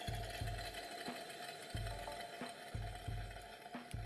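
Pressurised gas hissing steadily out of an open cocktail tap on an empty mini keg, with a thin whistle; with no liquid in the keg, only gas comes out. Faint background music with a low beat runs underneath.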